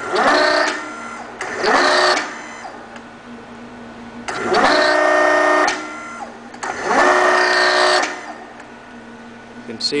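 Servo motor and hydraulic pump of a REXA electraulic actuator whining in four separate runs, each about a second to a second and a half long, the pitch rising quickly as each run starts. Each run is the actuator stroking its double-rod hydraulic cylinder to a new position.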